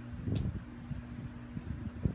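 Low steady hum of room background noise, with faint handling rustles as small plastic LEGO bricks are picked up, and a brief hiss about a third of a second in.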